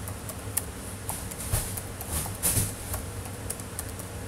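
Scattered light clicks and taps, with a small cluster of louder ones in the middle, about one and a half to two and a half seconds in.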